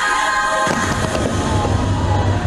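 Fireworks bursting with a low rumble and dense crackling over the show's music. A sustained held chord in the music breaks off about two-thirds of a second in, and the firework rumble and crackle take over.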